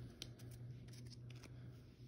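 Faint clicks and light scrapes of a stack of cardboard trading cards being handled, one card slid off the front of the stack to the back, over a steady low hum.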